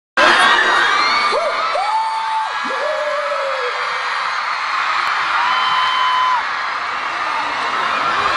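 Concert audience screaming and cheering, with many individual high-pitched shrieks standing out over the steady crowd noise.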